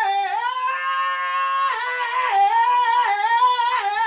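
A high voice singing one long wavering note without words, its pitch dipping slightly a few times.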